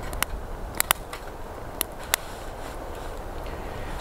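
Small twig fire crackling in a folding Lixada wood-burning camp stove, with a handful of sharp pops scattered through it, two of them close together about a second in.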